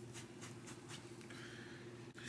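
Faint scratchy rubbing of a wet rag scrubbed back and forth on the fabric of a pair of shorts, a quick run of soft strokes, working dish soap into an oil stain. A low steady hum sits underneath.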